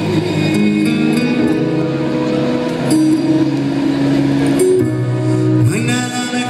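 A live band playing the introduction of a ballad, with guitar and long held notes, before the vocal comes in.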